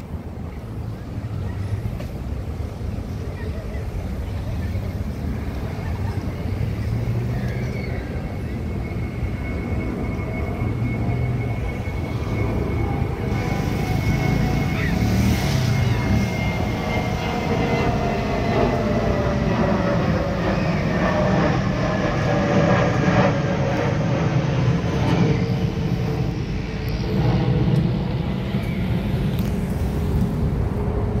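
Low rumble of a departing freight train's diesel locomotive, growing gradually louder, with a thin whine that slowly drops in pitch through the second half.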